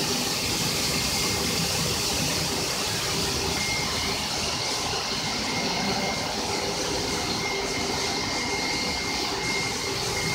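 Goldfist automatic carpet washing machine running steadily as it scrubs a foamed carpet, a constant mechanical and wet noise. A thin, steady high whine comes in about three and a half seconds in.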